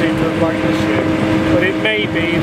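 Strong wind buffeting the microphone, a dense irregular rumble, with a steady hum underneath.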